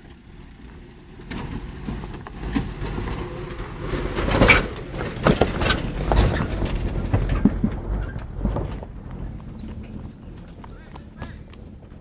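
Off-road jeep jolting over a rough trail: a run of irregular knocks and rattles from the body and suspension over a low rumble, loudest about four and a half seconds in and easing off near the end.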